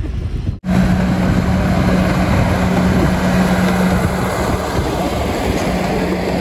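Miniature passenger train running along its track: a steady low hum over the noise of the cars rolling on the rails. It cuts in suddenly about half a second in, after a brief laugh.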